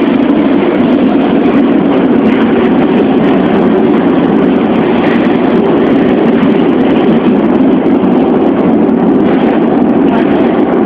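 Lisbon Metro ML90 train running through a tunnel, heard from inside a trailer car: a loud, steady rumble of wheels on rails.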